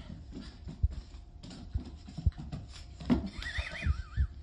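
Soft knocks and taps with a few louder thumps, then, about three seconds in, a dog's high, wavering whine that lasts about a second.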